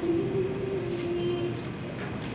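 A woman singing on stage, holding one long low note for about a second and a half before the next phrase.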